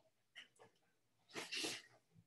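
A faint click, then a short, quiet intake of breath through the nose or mouth about a second and a half in, as the speaker draws breath before talking.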